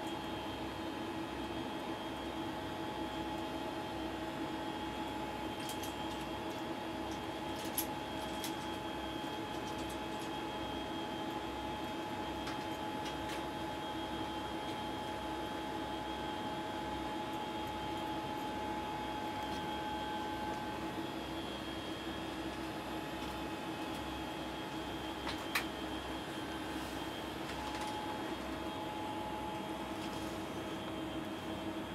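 Steady whir of the International Space Station's cabin ventilation fans and equipment, holding several constant hum tones, with a couple of brief clicks about eight seconds in and again near the end.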